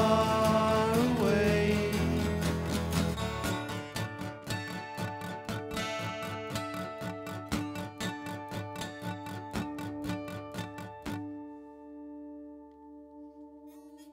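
Two acoustic guitars playing the closing bars of a song, rapidly strummed chords. About three-quarters through the strumming stops and a last chord is left ringing out and fading away.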